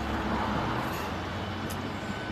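Low, steady rumble of road traffic: a vehicle's engine and tyres, with a short click near the end.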